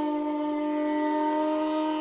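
Hotchiku, a long end-blown bamboo flute, holding one low note steadily with some breath noise.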